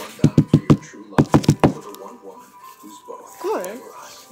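Two quick runs of sharp knocks on a tabletop, about five and then about four more, as hands pack kinetic sand into a plastic mold.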